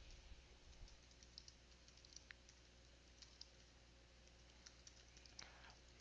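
Faint typing on a computer keyboard: scattered soft key clicks with short gaps between them.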